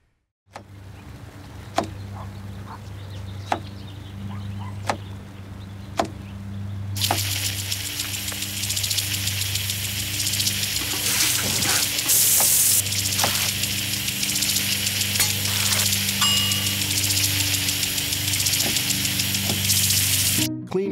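A few sharp taps over a low, steady music bed, then about 7 seconds in a loud, steady hiss of water spraying from a lawn sprinkler starts and keeps going.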